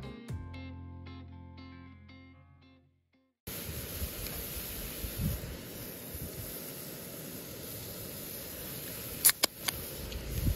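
Guitar music fades out over the first three seconds and stops. Then steady outdoor background noise, and near the end a few sharp clicks as a beverage can's pull tab is cracked open.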